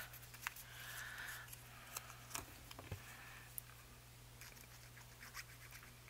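Faint scratching and rustling of paper as a glued paper tag is pulled loose and handled, in two short spells about a second and three seconds in, with a few soft clicks.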